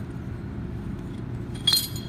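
Low steady room hum, then near the end a single short metallic clink with a brief ring, as the metal relief valve assembly of a Watts 957 backflow preventer is handled and its parts knock together.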